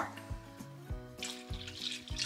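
Milk pouring from a plastic gallon jug into a skillet of sausage gravy, a splashing stream heard in the second half, over background music with a steady beat.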